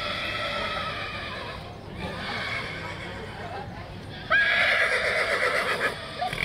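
A horse whinnying three times, each call long and wavering, lasting well over a second; the third, near the end, is the loudest.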